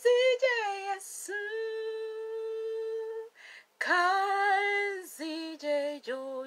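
A woman singing alone without accompaniment, in slow phrases of long held notes with short breaks for breath between them.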